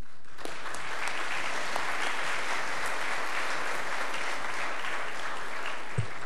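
Congregation applauding, building up about half a second in and thinning out near the end.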